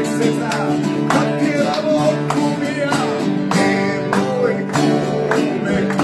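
Acoustic guitars strummed together in a steady rhythm, a chord stroke a little under twice a second, accompanying a Croatian folk-pop song.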